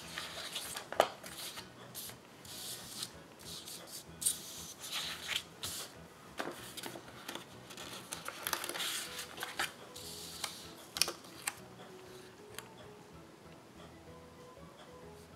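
Sheets of paper and sticker sheets rustling and sliding as they are handled and shuffled on a table, in irregular bursts with a few sharp taps and clicks.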